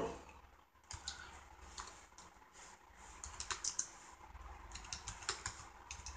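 Faint typing on a computer keyboard: a few scattered keystrokes, then two quicker runs of keystrokes in the second half.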